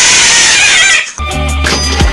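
A cat giving one loud, raspy yowl while being mounted by another cat in mating. The yowl lasts about a second and cuts off suddenly, and hip-hop music with a beat resumes.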